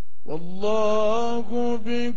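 A male reciter's voice chanting the Quran in the melodic style, starting about a quarter second in with long drawn-out notes that bend and turn, broken by short pauses for breath.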